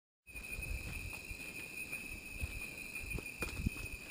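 After a brief silence, a steady high-pitched insect drone from the rainforest, with irregular soft thuds of footsteps on a forest trail.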